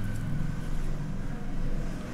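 Steady low background hum.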